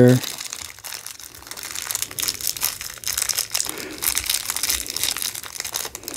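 A small clear plastic zip-lock bag crinkling and crackling as fingers handle and open it to take out a cable, with a continuous run of fine, irregular crackles.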